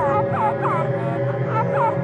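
Low, ominous music drone with a run of short squawk-like calls, each falling in pitch, about three a second; they pause about a second in and return briefly near the end.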